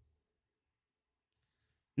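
Near silence with a few faint short clicks shortly before the end, then a man's voice starting at the very end.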